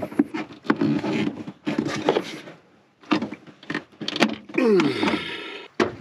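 Heavy battery cable being cut with hand cable cutters: crunching and scraping for the first few seconds. About four seconds in comes a sharp knock and clatter as the work light falls over.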